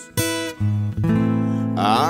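Acoustic guitar accompaniment between sung lines of a slow ballad: a few strummed chords ringing on. A singing voice comes in near the end.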